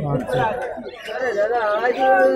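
Speech only: men's voices talking and chattering, with a short lull about halfway through.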